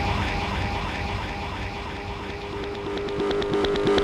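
Techno breakdown: a sustained synth drone with a faint repeating pulse and no kick drum. Light high ticks come in near the end.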